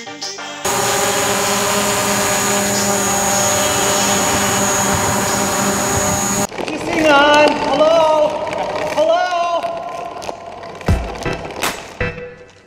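DJI Mavic Pro drone hovering close by: a loud, steady whine of several tones with a high whistle on top, starting suddenly about half a second in and cutting off sharply about six and a half seconds in. A voice follows after the cut.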